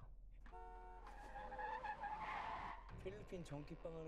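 Car tires screeching for nearly two seconds, faint and low in the mix, preceded by a brief steady tone. A man's voice speaks near the end.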